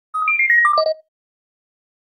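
Short electronic chime jingle: a quick run of about six clear notes lasting under a second, jumping up at first and then stepping down in pitch to a low final note, after which it stops dead.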